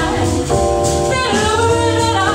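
Live small jazz combo: a woman singing with keyboard and drum-kit backing, the voice moving into long held notes about half a second in.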